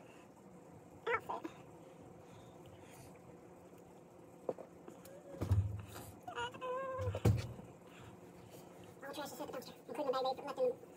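Clothes being handled and rummaged in a dresser drawer, with two dull bumps around the middle. Short murmured voice sounds come in between, unworded.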